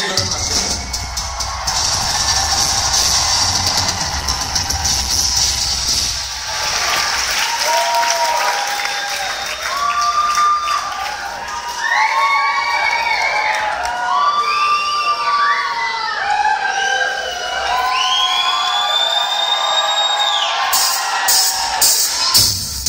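Concert crowd cheering and shouting. From about seven seconds in, many voices call out over one another in short overlapping shouts.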